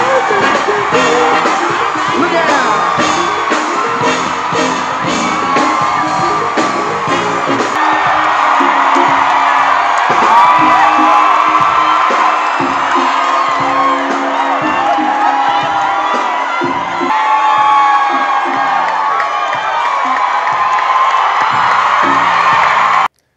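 A large crowd cheering and whooping over loud music with a steady beat; the beat stops about eight seconds in while the cheering goes on.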